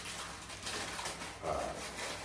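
Paper food wrappers and a takeaway paper bag rustling and crinkling as they are handled and pulled open, a dense crackling with many small crackles, and a short spoken word about one and a half seconds in.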